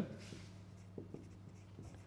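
Faint taps and scrapes of a stylus writing on a large touchscreen display, a few light ticks over a low steady hum.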